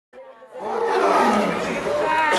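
A loud, dense roar that swells in about half a second in and then holds steady, opening the video's rap soundtrack.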